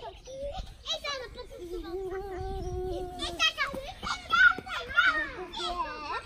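Young children's voices at play: wordless calls and high-pitched cries, busiest from about halfway through.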